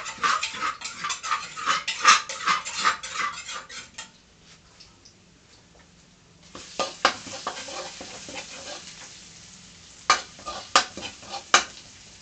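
A metal spatula scrapes and clatters rapidly in a steel wok for about four seconds while chili-garlic paste sizzles in hot oil. After a short lull the paste sizzles again, and a few sharp spatula strikes on the wok come near the end.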